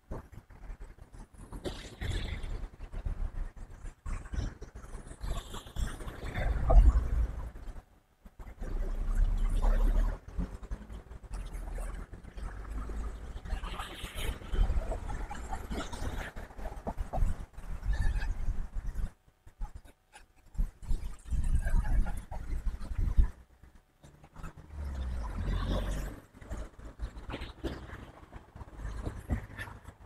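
Wind buffeting a clip-on lavalier microphone with a furry windshield: an uneven, gusty low rumble with rustles, dropping out briefly a few times.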